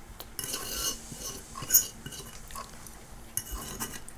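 Cutlery scraping and clinking on a plate as a man eats, with a sharper clink a little under two seconds in.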